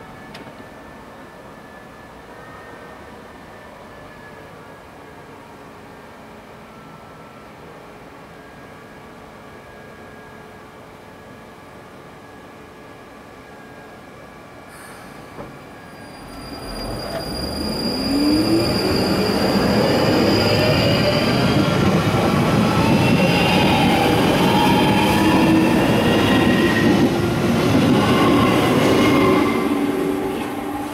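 London Underground 1995 Stock train humming steadily while stationary. About halfway through it pulls away, its traction motors whining in rising pitch as it accelerates, with wheel and rail noise growing loud as it leaves the platform.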